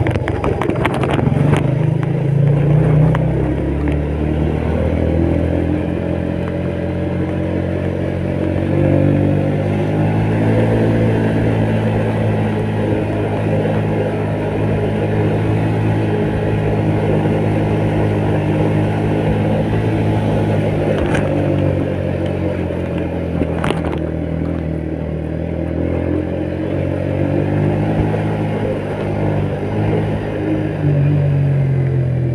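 Yamaha Vega motorcycle's single-cylinder four-stroke engine running under load, pulling uphill with a heavy load of paper aboard, its note holding steady with small rises and falls in pitch. Two sharp clicks come through, about two-thirds of the way in and again a few seconds later.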